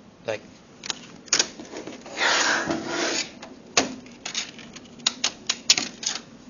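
Plastic laptop body being handled and turned over on a table: a rubbing, scraping stretch about two seconds in, then a run of sharp clicks and knocks from the case.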